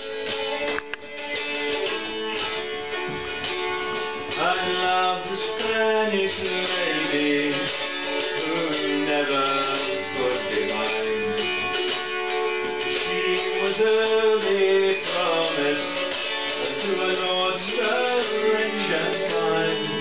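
Acoustic guitar playing a folk song live, picked and strummed steadily.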